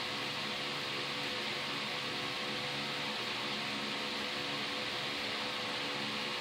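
Steady background hiss with a faint steady hum underneath, unchanging throughout: room tone with no distinct events.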